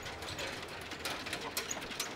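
Quiet street background with a run of small, irregular clicks and ticks.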